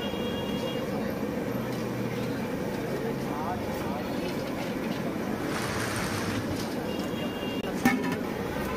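Busy roadside street noise: steady traffic with background voices and a horn toot near the end. A brief hiss comes about six seconds in, and a sharp click just before the end.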